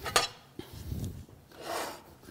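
Backing liner being peeled off strips of 3M VHB double-sided tape on an aluminum sheet, with hands handling the sheet: a sharp tick just after the start, then rubbing and rustling.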